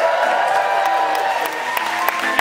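A concert audience cheering and applauding, with separate handclaps standing out near the end.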